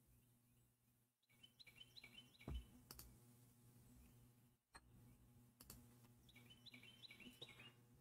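Faint computer mouse clicks and key taps, with two short runs of high electronic tones, about a second and a half in and again near six seconds in.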